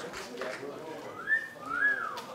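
A person whistles two notes like a wolf whistle: a rising note, then a note that rises and falls.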